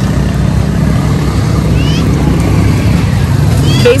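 Motorcycle street traffic running close by, a steady low engine rumble. A short rising chirp comes about halfway through.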